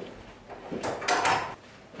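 A wooden door being handled: a click at the start, then a short scraping sound about a second in.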